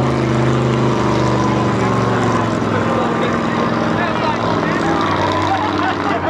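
Mega mud truck's engine running hard with a steady, sustained note that sags a little in pitch near the end, with voices underneath.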